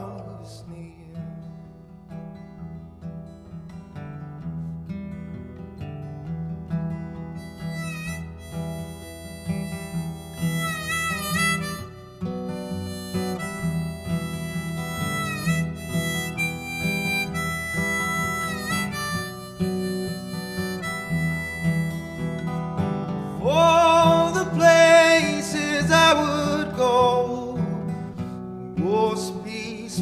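Instrumental break of a folk song: a strummed acoustic guitar under a harmonica playing the melody. The harmonica's notes bend in pitch and grow louder in the last few seconds.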